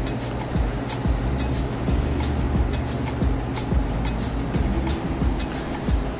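Background music with low sustained notes, over butter and olive oil sizzling in a frying pan, with frequent irregular sharp crackles as the butter starts to brown.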